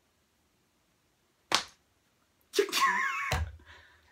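A single sharp hand slap about one and a half seconds in, followed near the end by a brief squeaky sound with wavering pitch and a low thump.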